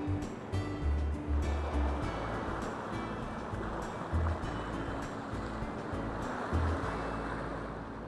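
Rushing river water splashing over rock ledges, a steady wash, under soft background music with low sustained notes. Both fade out near the end.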